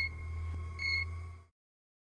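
A steady low hum with two short high-pitched beeps about a second apart. The sound cuts off abruptly about a second and a half in.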